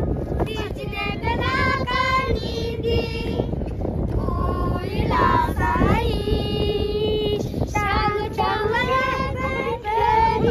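A group of children singing a song together, one melody with long held notes, with women's voices joining in. Wind rumbles on the microphone underneath.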